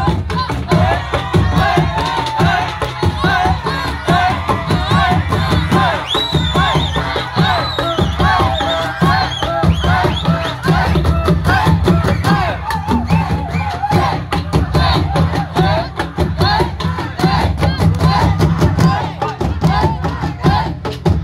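A beduk drum ensemble beating out a steady, driving rhythm of large-drum strokes. Many voices in the crowd shout and cheer over it throughout.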